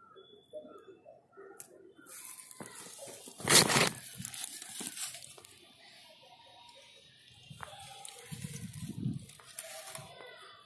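Rustling and crinkling of a woven plastic manure sack being handled, with one loud scrape about three and a half seconds in.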